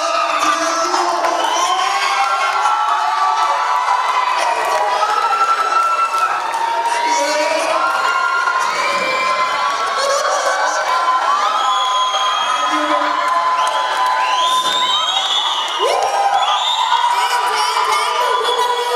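A crowd of people cheering and shouting, many voices overlapping, with rising and falling whoops and calls.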